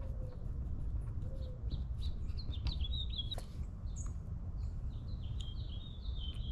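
Small birds chirping in the background: short high chirps in a bout around the middle and another near the end, over a steady low rumble.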